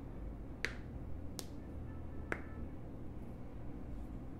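Three sharp clicks, spaced about a second apart, over a steady low hum. The last click rings briefly.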